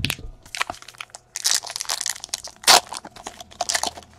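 A trading-card pack wrapper being torn open and crinkled, with cards handled against it: a run of short crackling rustles, the loudest about two-thirds of the way through.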